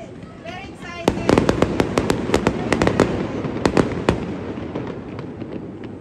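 Fireworks going off: a rapid run of sharp cracks and pops starting about a second in, lasting about three seconds and then dying away.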